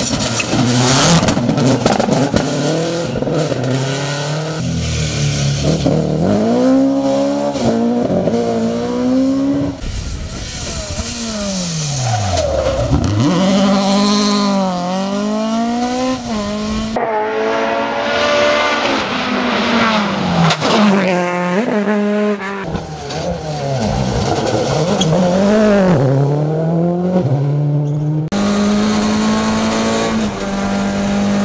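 Rally cars driven flat out on a stage, one after another: each engine revs high, its pitch climbing through the gears and dropping at every shift or lift-off. About halfway through, one car's note falls away low and climbs again. A Subaru Impreza rally car opens the run, and a steadier engine note takes over near the end.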